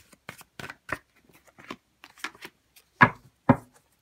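Tarot deck being shuffled by hand, a run of quick soft flicks and clicks of cards. It ends with two cards dealt out, two louder snaps about half a second apart near the end.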